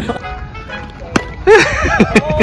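Men laughing over light background music, with the loudest burst of laughter near the end and a sharp click a little after a second in.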